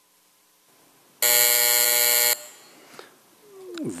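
Voting-system buzzer sounding once: a loud, steady, buzzy tone that starts about a second in, lasts a little over a second and cuts off suddenly. It is the signal that electronic voting has closed.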